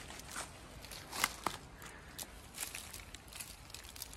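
Soft rustling with scattered light crackles, loudest a little over a second in, as a freshly uprooted calaguala fern with its soil-covered rhizome and roots is handled among dry fallen leaves.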